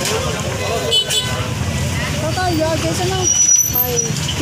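Street market bustle: people talking over a steady low rumble of passing motor traffic.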